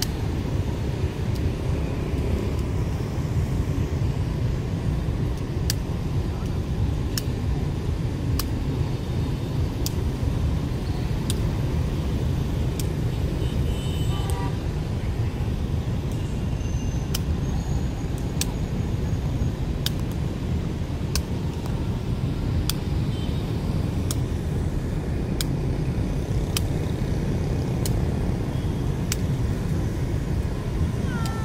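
Feathered shuttlecock being kicked back and forth in a đá cầu rally: sharp taps about every second and a half, over a steady low rumble.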